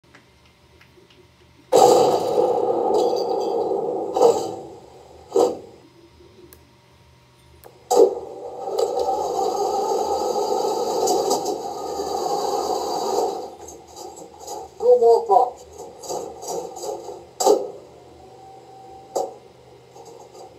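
Clark TK50E sound board in a Heng Long RC Pershing tank playing its effects through the tank's small speaker. A long noisy stretch starts suddenly about two seconds in, sharp cracks follow, and another long noisy stretch comes next. Short radio-style voice clips follow near the end.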